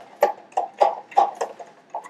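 A pet bird making a run of about six short, evenly spaced clucking calls, roughly three a second.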